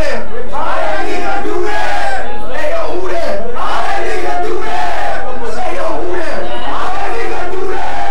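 A crowd of people shouting and hollering together, many loud voices overlapping.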